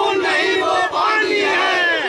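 Crowd of supporters shouting a political slogan in unison, two long drawn-out cries with many voices together.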